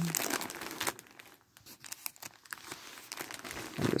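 Close crinkling and rustling handling noise, scattered with small sharp clicks, louder in the first second and then softer.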